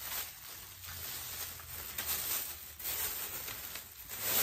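Clear plastic bag rustling and crinkling as it is handled, in a few short scattered crackles.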